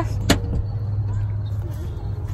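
Steady low rumble with a single sharp click about a third of a second in.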